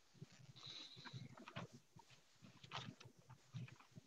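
Near silence: faint room noise with scattered soft clicks and low thumps.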